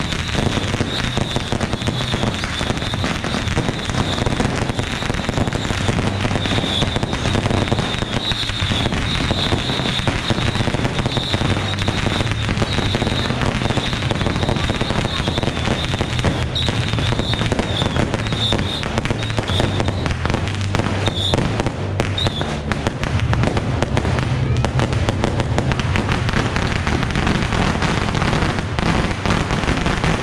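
Fireworks going off in quick succession: rockets and ground spark fountains crackling and popping without a break. A high whistle runs over the crackle and fades out about three-quarters of the way through.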